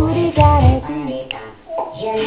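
A dance-pop song with a high, child-like singing voice over a thumping bass beat, played from a computer. The beat drops out for about a second in the middle, leaving the voice and a single click, then comes back.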